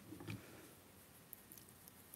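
Near silence: room tone, with a few faint soft sounds near the start.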